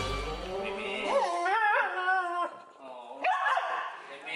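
The last chord of background music dies away. A dog then gives a whining, wavering call that bends up and down in pitch for about a second and a half, with a shorter call about three seconds in.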